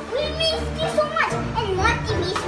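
A young child's voice in play, over steady background music.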